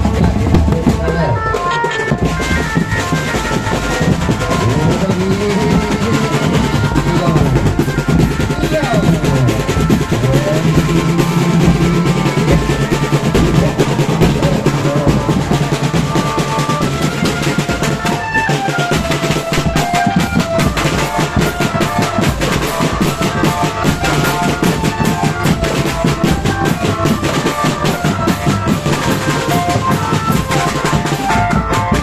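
Drum band playing: marching bass drums and snare drums beating fast and continuously, with a melody carried over the drumming.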